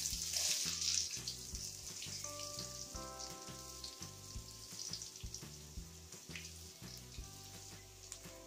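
Chopped onions and curry leaves frying in oil in an aluminium kadai, a steady sizzle that is loudest at first and fades away.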